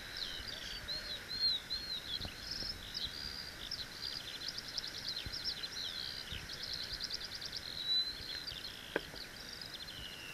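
A songbird singing one long, unbroken, fast warbling song of quick varied notes and trills over a steady outdoor hiss. There is a single short click near the end.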